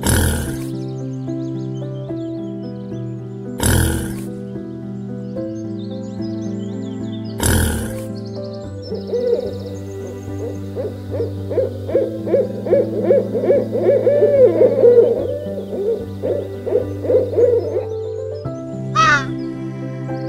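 Owl calling: a fast run of rising-and-falling hoots repeated for about ten seconds in the second half, over soft piano music. Earlier, three short noisy bursts come about four seconds apart.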